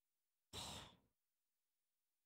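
A man's single short breath out into a close microphone, about half a second in, with a soft rumble of air hitting the mic.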